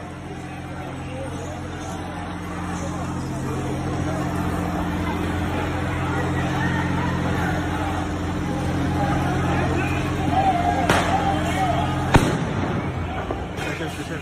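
Crowd shouting over a steady low hum, with two sharp bangs near the end, the second the louder: police crowd-control munitions going off among the protesters.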